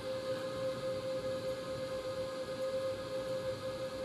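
EG4 18kPV hybrid inverter under a heavy load of about 14 kW, its cooling fans running with a steady electrical whine. It is mixed with the fan noise of the space heaters and the hum of the other running appliances.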